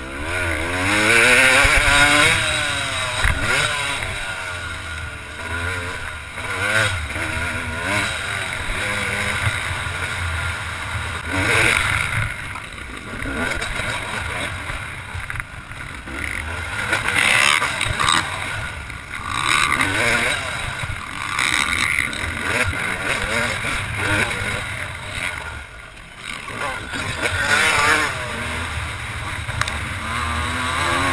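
Yamaha YZ250 two-stroke single-cylinder motocross engine revving up and falling back over and over as the bike is ridden hard, with wind noise on the helmet-camera microphone. It is loudest about two seconds in.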